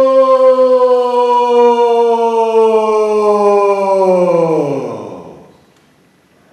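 A single voice holding one long chanted "aah" on a steady pitch, which then slides down and fades out about five seconds in, like a long sighed exhale.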